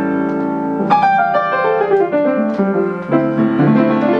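Upright piano playing a slow original piece. Held chords give way to a new chord struck about a second in, then a falling line of notes, and a low chord just after three seconds.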